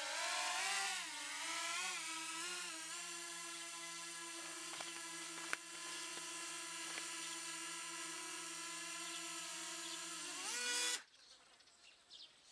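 DJI Mavic Mini quadcopter's propellers whining as it hovers, the pitch wavering up and down for the first few seconds as it manoeuvres, then holding steady. Near the end the whine rises briefly and then cuts off suddenly as the drone is caught by hand and its motors stop.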